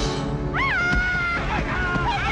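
Dramatic film-score music: under a steady low bed, a high wailing line swoops up and back down about half a second in, then holds a long note, with a second held note near the end.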